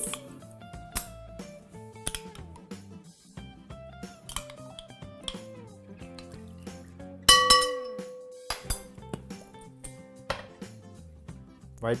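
A metal utensil clinking against a glass mixing bowl while almond butter is stirred into orange juice. About seven seconds in comes one loud ringing strike on the glass.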